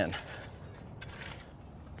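Mostly quiet outdoors, with a faint, brief scrape of a steel shovel blade in loose dirt about a second in as the shovel is set into the hole to measure its depth.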